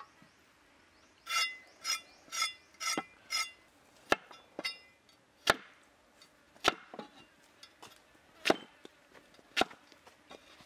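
Heavy cleaver chopping a carrot into rounds on a wooden chopping block: single sharp knocks at uneven intervals in the second half. Before the chopping starts, a run of five short ringing, pitched notes about two a second.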